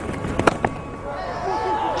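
Cricket bat striking the ball: one sharp crack about half a second in, with a smaller knock just after, over a steady haze of stadium crowd noise.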